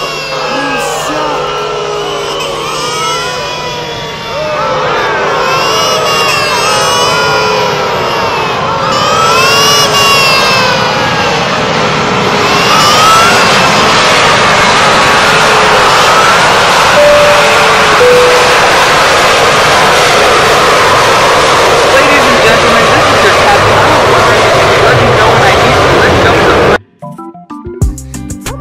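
Loud, high, wavering voices yelling over music, with a dense roar of noise building from about halfway. Everything cuts off abruptly about a second before the end.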